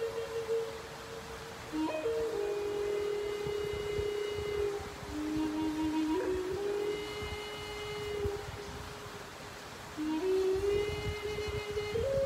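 Native American flute playing a slow melody of long held notes, sliding up or down into each new note, with a pause for breath about two-thirds of the way through.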